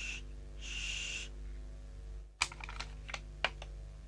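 Small spray bottle of cologne hissing: a spray burst that ends just after the start, then another lasting under a second about half a second later. Then comes a sharp click and a few lighter clicks as the bottle is handled and set down on a hard surface. A steady low hum runs underneath.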